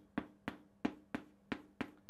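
Chalk tapping against a blackboard as short strokes are written, six sharp taps about three a second.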